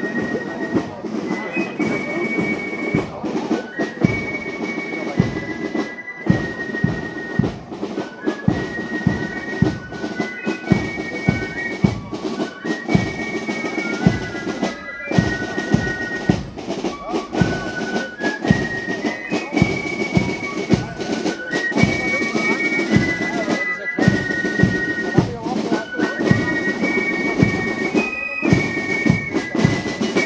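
A Spielmannszug (German marching flute-and-drum corps) playing a march: a high flute melody of held notes over a steady marching drum beat.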